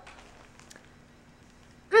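Quiet room with a faint steady hum, then near the end a short, loud voiced 'mmm' sliding down in pitch.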